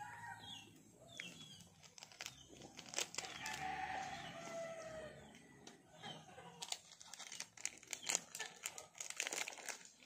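Plastic snack wrapper crinkling and crackling in the hands, with a rooster crowing in the background about three to five seconds in.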